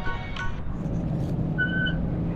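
Background music fading out in the first half-second, leaving a steady low rumble of road traffic. A short high beep sounds near the end.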